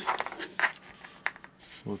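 Rotary function switch of a Tenma 72-9385 digital multimeter being turned, giving a few short, sharp detent clicks.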